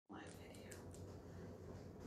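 Very quiet room tone with a steady low hum, and a faint whispered murmur in the first second.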